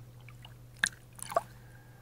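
Small splashes and drips of lake water at a camera floating on the surface: two short splashy clicks about a second apart, over a low steady hum.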